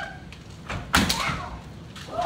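Kendo sparring: a bamboo shinai cracks sharply against armour about a second in, with a lighter knock just before it. The tail of a shouted kiai is heard at the very start.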